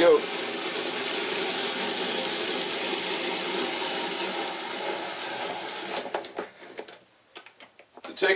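Hand-cranked apple corer and slicer working: the threaded shaft screws an apple through the coring and slicing blade, making a steady grinding, scraping run of metal and cut apple for about six seconds. A few clicks follow as the cranking stops.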